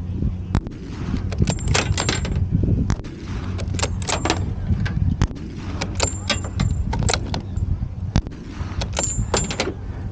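Scoped rifle being handled and its bolt worked: short metallic clicks and clacks in small clusters, over a steady low engine hum. No shot goes off.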